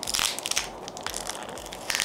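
Plastic wrapping crinkling and crackling as it is handled, in an irregular run of quick crackles, loudest just after the start.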